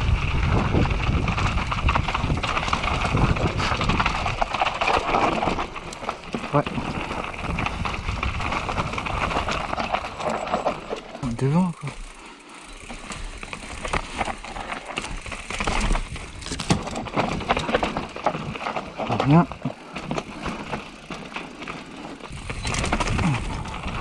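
Indistinct voices of several people talking, with two short rising calls: one about halfway through and one near the end.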